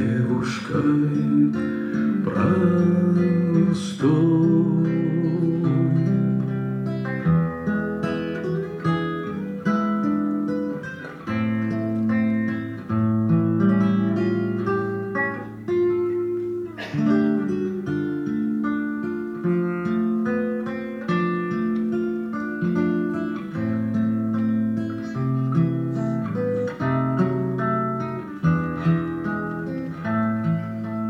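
Acoustic guitar played continuously as accompaniment, with a man singing a song over it.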